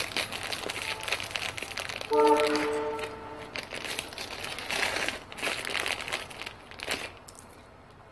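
Crinkling of a thin plastic zip-lock bag being handled and opened, with small metal rivets shifting inside it. About two seconds in, a short steady pitched tone sounds for just over a second.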